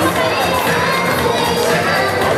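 A crowd cheering, with many children's voices shouting at once, loud and steady throughout.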